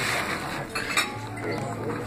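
Fingernails scratching and picking at the laminated plastic film on a paperback book's cover, with a couple of sharp little clicks near the middle as the film catches and lifts. The old cover peels poorly, coming away only in small bits.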